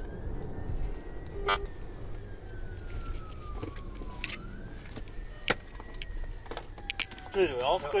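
Police siren wailing in slow rising and falling sweeps, about four seconds each, over a low vehicle rumble with a few sharp clicks. Near the end a faster warbling tone joins in.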